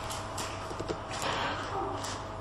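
Background room tone in a pause between sentences of speech: faint hiss and low hum, with a faint steady tone and a few light scattered knocks.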